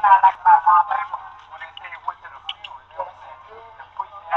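People's voices in casual conversation, loudest in the first second, then quieter scattered talk, with a faint steady low hum underneath.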